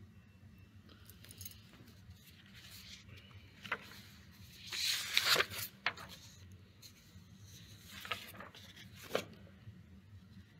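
Faint scattered handling noises: a few light clicks and knocks, with a short rustle about five seconds in.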